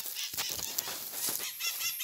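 Rustling and crackling steps in dry grass and leaves, then, about one and a half seconds in, a bird starts a rapid series of repeated high call notes, about seven a second.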